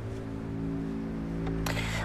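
Background drama score of held low notes, a steady sustained drone with no beat. A short noisy rustle comes in near the end.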